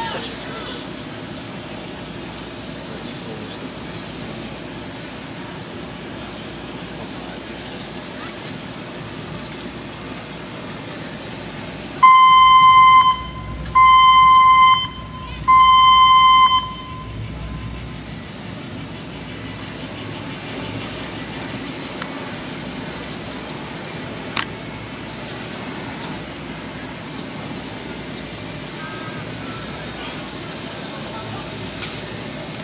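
Three long blasts of an archery range's signal horn, each about a second of one steady mid-pitched tone, starting about twelve seconds in. Three blasts are the archery signal that ends shooting and sends the archers out to score and collect their arrows.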